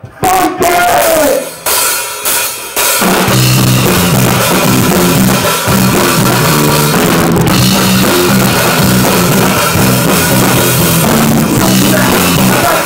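Live rock band playing loud: a few separate drum hits over the first three seconds, then the full band comes in at about three seconds with drum kit and a repeating low bass line under guitars.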